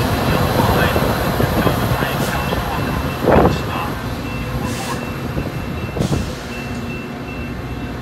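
Metra commuter train rolling away along the platform, its F40PHM-3 diesel locomotive and wheels on the rails making a steady rumble that slowly fades. There is one loud thump about three and a half seconds in.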